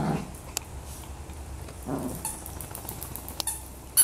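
Toy poodles playing, with a short growl right at the start and another about two seconds in, and claws clicking on a tile floor.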